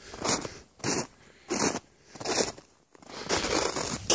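Footsteps crunching on hard-packed, crusted snow: about four steps at roughly one every two-thirds of a second, then a longer crunching scuff near the end.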